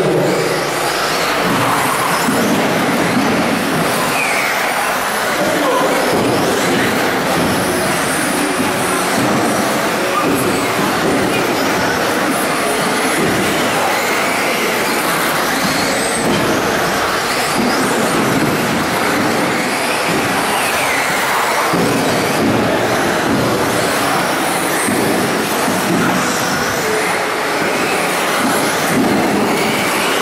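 Several 1/10-scale two-wheel-drive RC buggies racing on a carpet track in a large hall: a steady wash of motor whine and tyre noise, with whines rising and falling as the cars accelerate and slow.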